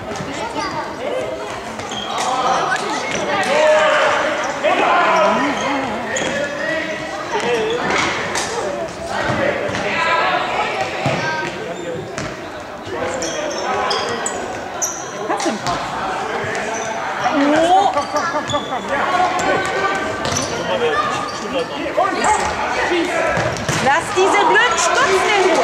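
A football being kicked and bouncing on a sports-hall floor, with repeated knocks that echo in the large hall. Young players' and onlookers' voices call out over the play.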